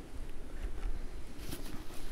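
Soft rustling and a few light knocks as gloved hands rummage inside a fabric haversack, over a low steady rumble.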